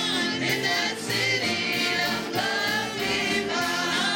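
A gospel praise team of several voices singing together into microphones, amplified through the church sound system.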